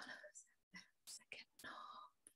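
Near silence with a voice whispering faintly, in short scattered snatches.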